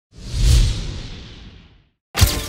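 A swoosh sound effect with a deep rumble under it, swelling in over the first half-second and then fading away over the next second or so.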